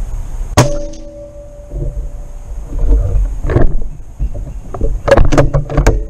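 A .25-calibre Benjamin Kratos PCP air rifle fires one shot about half a second in: a sharp crack followed by a ringing metallic tone that lasts about a second. Several more sharp clicks and knocks come in a quick run near the end.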